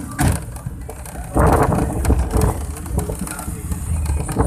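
Road and engine noise heard from inside a moving car, a steady low rumble with a louder rushing swell about a second and a half in that lasts about a second.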